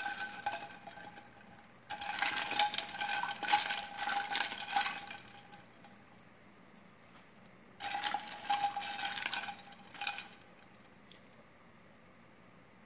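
Ice cubes clinking and rattling in a small stainless steel saucepan of water as the pan is swirled, in three bursts, with a ringing note under the clinks. The boiled eggs are being chilled in ice water to stop their cooking.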